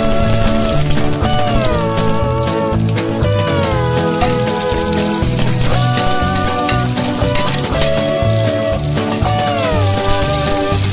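Chopped garlic and onion sizzling in hot oil in a wok, a steady hiss. Background music with sliding notes and a bass line plays over it.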